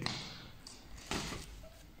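Faint sounds of two grapplers moving in a clinch on training mats: a short tap at the start and a brief rustle about a second in, from clothing and shifting feet.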